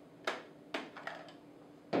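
Sharp plastic clicks as the lid over the discharge network on a Teseq NSG 438 ESD simulator pistol is popped open: three quick clicks within about a second.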